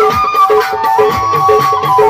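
Live Saraiki folk music band playing: a long held melody that slides between pitches, over harmonium and a repeating short-note figure, with a steady hand-drum beat.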